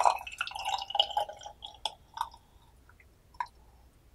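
Tea pouring through a mesh strainer into a glass pitcher: a short trickling stream with a ringing splash. It thins to separate drips after about two seconds, with one last drip near the end.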